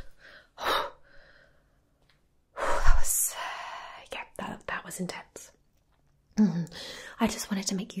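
A woman's close-miked breathy vocal sounds: short whispered breaths and gasps, the loudest a strong breathy puff about three seconds in. Soft voiced murmurs start near the end.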